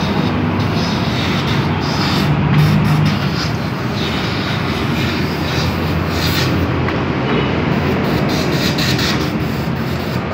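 Steady rushing, rumbling noise of a catalytic-converter cleaning rig forcing pressurised flow from a hose through a choked Honda catalytic converter.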